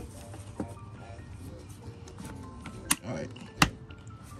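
Plastic air filter housing cover on a 2014 Nissan Sentra being worked back into place over a new filter, with low rustling and two sharp plastic clicks in the second half, the second about a second before the end.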